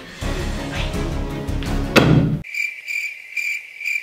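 A dart hits the map board with a sharp thud about two seconds in, after a low rushing lead-in. Then comes a high, steady, pulsing crickets sound effect, the comic 'awkward silence' cue for a throw that has just missed the section she wanted.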